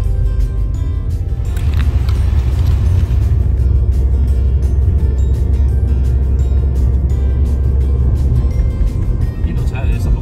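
Background music over the steady low rumble of a car driving.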